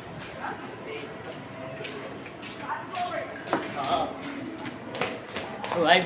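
People talking at a distance, their voices indistinct, with a few short sharp knocks in the second half.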